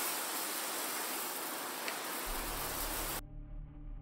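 Garden hose spraying water onto cinder blocks, a steady hiss that cuts off suddenly about three seconds in. Low music comes in shortly before the hiss stops.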